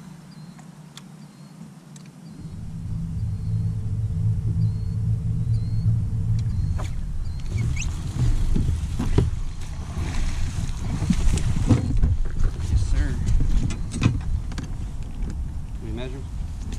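Bass boat's electric trolling motor humming low and steady, starting about two seconds in, with a thin higher whine for a few seconds. From about eight seconds in, rustling and water noise as a small bass is reeled in and lifted aboard.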